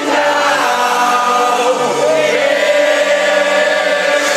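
Loud electronic dance remix played over a festival sound system during a breakdown: sustained synth chords under a sung vocal line, with no beat or bass.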